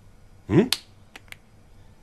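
A man's short questioning "eh?", then one sharp click followed by two fainter ticks as a plastic ketchup squeeze bottle is handled.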